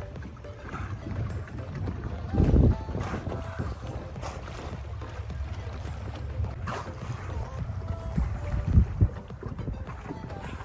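Wind buffeting the microphone on a small boat over a steady low rumble. There are louder blasts about two and a half seconds in and again near the end.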